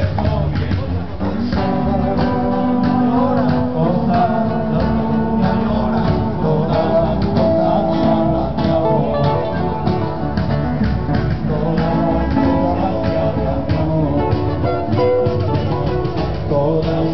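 A group of men singing together, accompanied by acoustic guitar, performed live.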